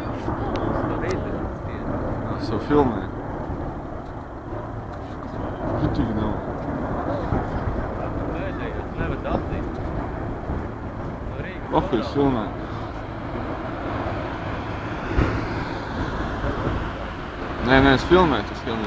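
Distant helicopters flying over, a steady low rotor-and-engine drone.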